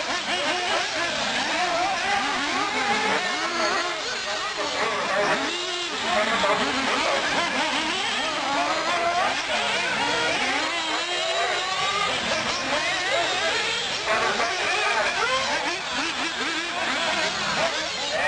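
Several radio-controlled off-road racing buggies running together, their motors repeatedly rising and falling in pitch as they accelerate and slow through the corners, with people talking in the background.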